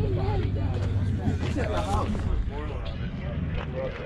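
Indistinct talk of several people nearby, with no clear words, over a steady low hum.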